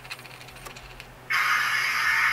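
Faint rapid ticking as the points of a Shinohara curved turnout are driven slowly across. Just over a second in, a sudden loud hiss, a 'puff': the track shorting, because the points move so slowly that the relay has already reversed the polarity before the rails disconnect.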